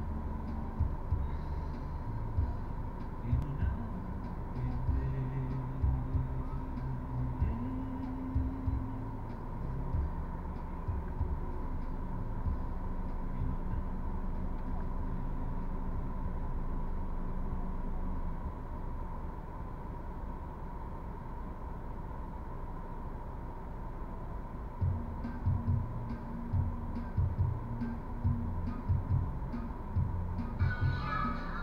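Muffled music with low bass notes and indistinct voices from a car radio, heard inside the car cabin while it waits in traffic. A steady high tone runs beneath it.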